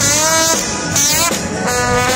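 Loud live rock band playing, with a man's voice close to the microphone singing or calling out over it near the start and again near the end.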